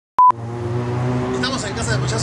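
A single short, high-pitched electronic beep, loud and steady in pitch, followed by a steady low hum with voices in the background from about a second and a half in.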